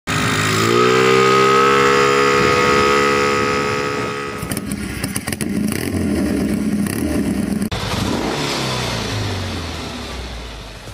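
Motorcycle engine revving up over the first second and holding high revs, then a rougher, pulsing run; an abrupt cut about three-quarters of the way through leaves a lower, uneven engine sound.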